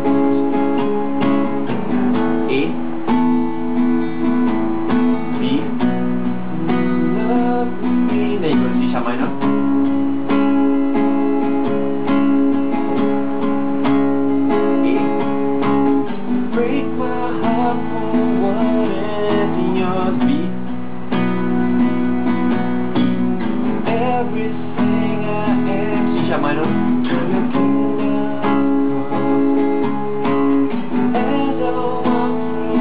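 Cutaway acoustic guitar strummed with a pick in a steady rhythm, changing chords, with a man's voice singing along at times.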